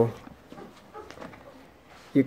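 A short pause in a man's liturgical chanting, with the tail of a held note at the very start. Then only faint room sound with a few small ticks.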